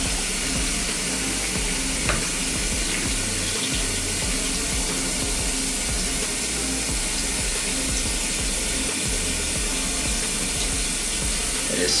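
Shower water running steadily, with a single click about two seconds in.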